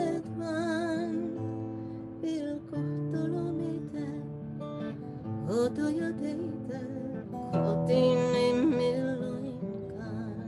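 A woman singing a folk song with vibrato while accompanying herself on a plucked acoustic guitar. A long held sung note comes near the end.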